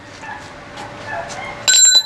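A length of 3/8 metal pipe set down on concrete near the end: a sudden metallic clink that rings on with a few clear high tones.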